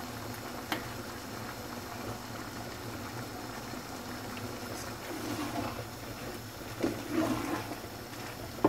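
Minced chicken cooking on a high gas flame in a non-stick pan, its juices bubbling and sizzling steadily. A few scrapes of a wooden spatula come near the end as stirring begins.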